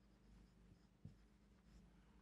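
Faint marker pen writing on a whiteboard: light scratchy strokes, with a small tap about halfway through.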